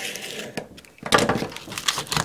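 Utility knife blade scraping along emery cloth on a wooden stick, scoring the cloth: a gritty, scratchy scrape, loudest in the second half.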